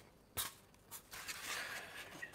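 Styrofoam packaging and its box being handled: two light knocks, then about a second of scratchy rubbing as the pieces are slid together.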